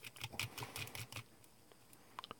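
A wooden skewer with a rounded tip rubbing aluminium foil down over a small model car, giving a faint run of small ticks and crinkles that stops about a second and a half in.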